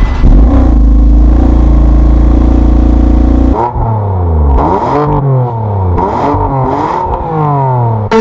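Exhaust of a BMW M4's twin-turbo inline-six, heard at the tailpipes. It runs loud and steady at idle for about three and a half seconds, then is revved in several quick blips, the pitch rising and falling each time.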